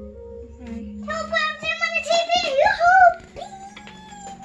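A young child's high voice, calling out or half-singing for about two seconds, over soft background music with steady held notes.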